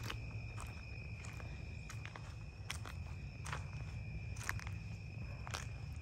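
Footsteps outdoors at night: scattered soft, irregular steps. Under them runs a steady high-pitched insect drone.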